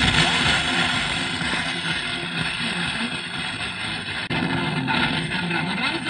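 FM static from a Pioneer car radio tuned to a weak, distant station: a loud, steady hiss with faint programme audio barely coming through underneath. The hiss dips briefly about four seconds in.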